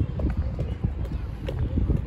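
Footsteps on stone paving, close to the microphone, as an irregular run of taps over a low rumble.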